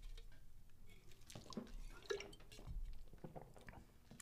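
Faint mouth sounds of someone tasting a drink: soft lip smacks and small wet clicks, scattered and quiet.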